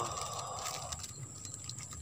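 Insects, likely crickets, giving a steady high-pitched drone, with faint scattered ticks over a low background hiss that fades about a second in.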